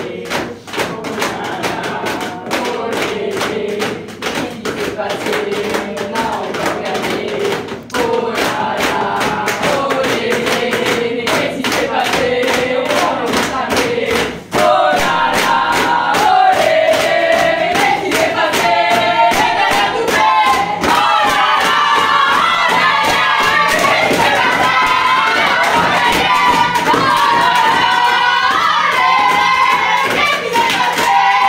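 A group of women chanting together while beating a rhythm with their hands on a table. About halfway through, the chant gets louder and higher as the group builds to a shout.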